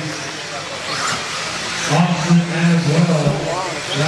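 A race announcer's voice over a PA in a large hall, with radio-controlled buggies running on an indoor dirt track beneath it. The first two seconds are mostly the cars and the hall; the voice comes in about two seconds in.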